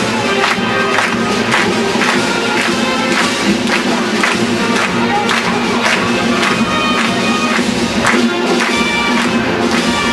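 Marching band playing a march on snare drums, bass drum and brass, with a steady drum beat of about two strokes a second.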